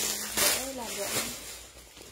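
A woman says a short "ừ", with a soft rustle of cloth as a garment is handled just before it; the sound then fades to quiet room tone.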